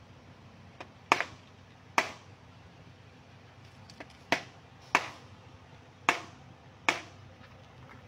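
Small hammer tapping the metal header tabs of a Proton Saga radiator to clamp the plastic end tank back onto the core, a light hammer used so the tank is not damaged. About six sharp metallic strikes at uneven intervals, with a couple of lighter taps among them.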